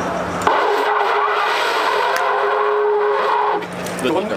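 An animal horn blown as a war horn, sounding one long steady note. The note starts about half a second in and lasts about three seconds.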